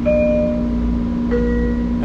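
Two-tone electronic chime inside a commuter train carriage, a higher note followed about a second later by a lower one, over the train's steady running hum and rumble.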